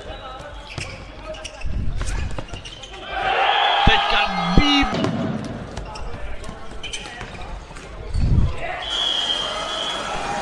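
Floorball in play: sharp clicks of sticks striking the plastic ball and each other. A crowd cheers loudly for about two seconds from around three seconds in, as a goal goes in.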